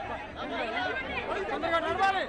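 Crowd chatter: several people talking over one another at once, a little louder near the end.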